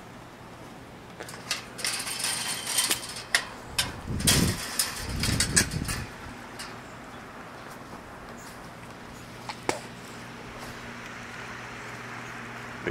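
Handling noise from a handheld camera being carried while walking: a run of clicks, rattles and rustles with low buffeting from wind on the microphone in the first half, then a faint steady hum.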